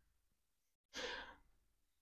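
Near silence, broken by one short, faint breath about a second in.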